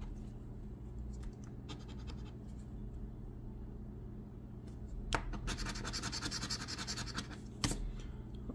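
A coin scratching the coating off a scratch-off lottery ticket: a few light scrapes in the first seconds, then a quick run of rapid scraping strokes from about five seconds in until past seven seconds.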